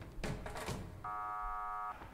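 A short, steady electronic buzzer-like tone, held for just under a second, starting about halfway in and cutting off abruptly. Before it there are faint voice sounds.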